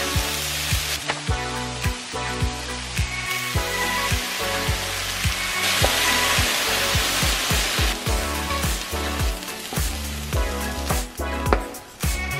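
Vegetables and tofu sizzling in a frying pan as they are stirred with a wooden spoon, over background music with a steady beat. The sizzle swells about six seconds in, as peanut sauce goes into the hot pan.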